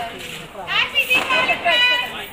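Several excited, high-pitched voices shouting and cheering together, with a quick rising whoop about a second in.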